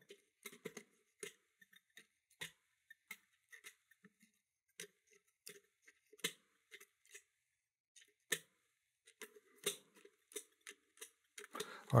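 Brass levers of a 5-lever mortice lock clicking as a lever pick lifts them under heavy tension: faint, irregular clicks, sometimes a second or more apart. The levers pop up and make noise but none binds, so the lock is not yielding to the pick.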